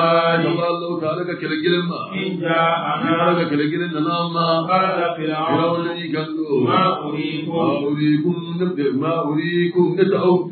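Islamic devotional chanting: voices chanting continuously, with a steady low hum beneath the melodic line.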